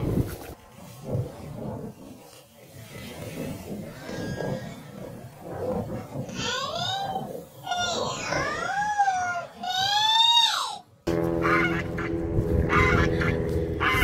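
Several drawn-out animal calls in the second half, each rising and then falling in pitch, after a stretch of quieter low rustling.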